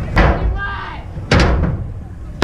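Two hard knocks with ringing tails, about a second apart, from a stunt scooter hitting a skatepark ramp.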